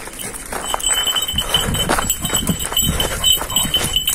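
Kangal dog being walked on a metal chain leash over brick paving: an irregular run of footsteps and chain clinks, two to three a second.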